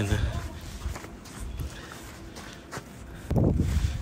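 Footsteps on a snow-covered pavement: a few soft, irregular steps. A brief low rumble comes near the end.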